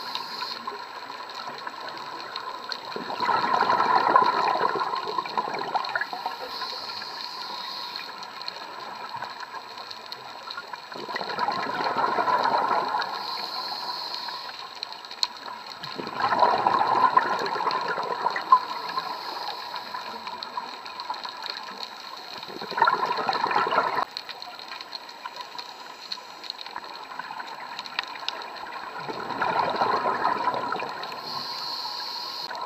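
A scuba diver breathing through a regulator underwater: a bubbling rush of exhaled air about five times, each lasting two to three seconds and roughly six seconds apart, with a fainter high hiss of inhalation between them.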